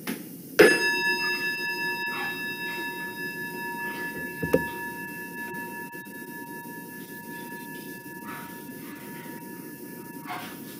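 A small bell-like chime is struck once and rings on with several clear, steady tones, fading slowly over the next several seconds to open a time of silent prayer. A short soft knock comes about four and a half seconds in.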